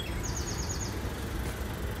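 Outdoor ambience: a steady low rumble with a small bird's quick trill of about seven rapid high chirps in the first second.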